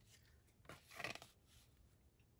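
A brief rustle and scrape of a paper card being handled, peaking about a second in, in an otherwise quiet small room.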